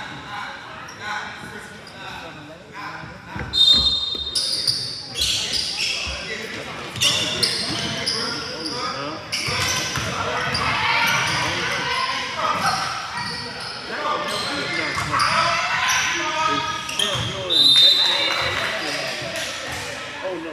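Basketball game in a gym: the ball bouncing on the hardwood court and shouting voices echo in the hall. Two short high squeals stand out, about four seconds in and near the end.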